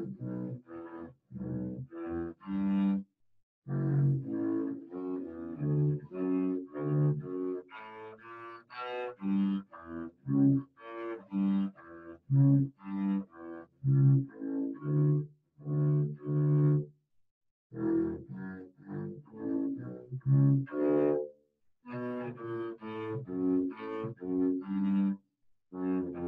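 Double bass played with the bow: a melody of separate, detached notes, about two or three a second, broken by short pauses between phrases.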